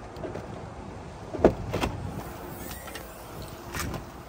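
The rear liftgate of a 2010 Toyota Prius is unlatched and lifted open. Two sharp latch clicks come close together about a second and a half in, and another click comes near the end, over a steady low background hiss.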